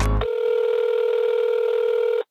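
A hip-hop beat cuts off just after the start, giving way to a steady telephone line tone heard as through a handset, held for about two seconds: a call being placed.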